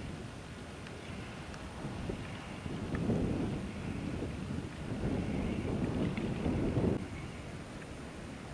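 Wind gusting on the microphone outdoors: a steady rush with two rough, buffeting swells, one about three seconds in and a longer one from about five to seven seconds.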